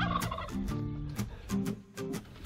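Domestic birds calling in several short, low notes about half a second apart, with small sharp clicks between them.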